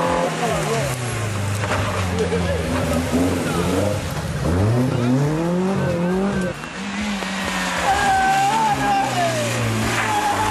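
Rally car engines at full load on a stage: the Volkswagen Golf Mk1 rally car's engine revs climb sharply twice in quick succession about halfway through as it accelerates out of a corner. After that another engine holds steadier revs.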